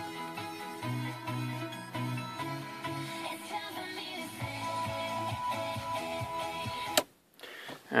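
Music playing from the car's aftermarket stereo head unit, heard inside the cabin, cutting off suddenly with a click about seven seconds in as the radio is switched off at its added power switch.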